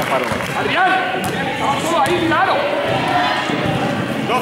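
Sounds of a basketball game in a sports hall: indistinct shouts and calls from players and spectators, with a basketball bouncing on the court floor.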